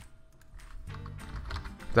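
Computer keyboard typing: a quick run of light key clicks, with background music underneath.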